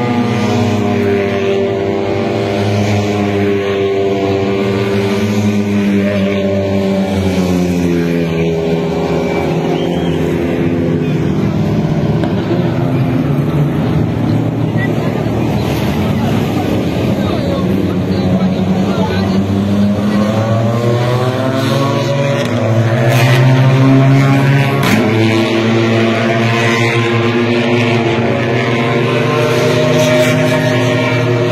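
A continuous engine drone whose pitch sinks slowly over the first ten seconds and climbs again in the second half, with a crowd's voices mixed in.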